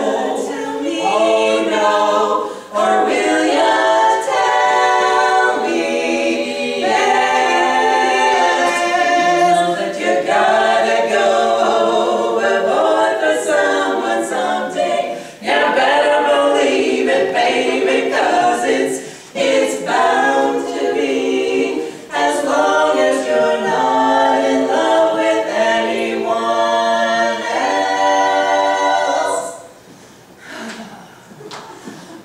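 A women's barbershop quartet singing a cappella in close four-part harmony, held chords in phrases with short breaks for breath between them.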